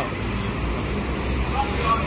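Steady low rumble of street and traffic noise, with a faint voice near the end.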